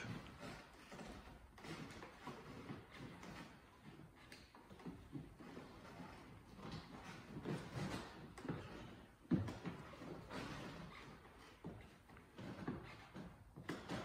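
Faint, irregular thuds and shuffles of trainers on a wooden floor and exercise mat during lunges and squats, with one sharper knock about nine seconds in.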